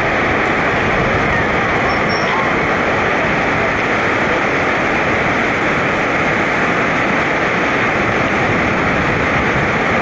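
Steady rushing of a fast white-water river: a loud, even noise that holds without a break.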